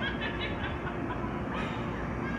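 Steady background hiss with faint, distant voices of people talking.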